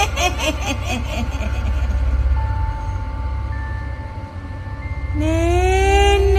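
Ghost sound-effect track: a cackling woman's laugh, its repeated 'hi-hi-hi' fading away over the first second or two, above a low rumbling drone. A steady high tone holds through the middle, and about five seconds in a ghostly voice starts a rising wail.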